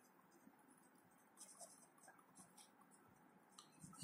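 Faint, intermittent scratching of a pen writing on paper.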